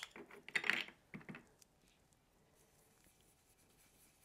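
A few light plastic clicks and taps in the first second and a half as a mini ink cube and an ink-blending tool are handled, then only faint room hiss.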